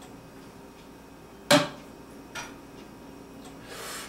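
A cup set down on a kitchen counter with one sharp knock, then a lighter tap about a second later, and a short breathy hiss near the end.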